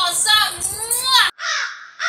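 A woman's voice swooping up and down in pitch for about a second, then a sudden switch to a crow-cawing sound effect: a few harsh caws, each falling in pitch, thin and without bass.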